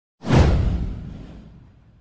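A cinematic whoosh sound effect with a deep low boom under it. It hits suddenly about a quarter of a second in and fades away over about a second and a half.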